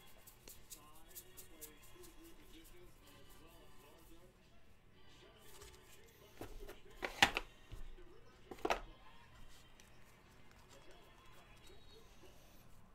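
Baseball cards being handled and flipped through by hand: light ticks and rustles, with two louder sharp crackles about seven and about eight and a half seconds in. Faint music plays underneath.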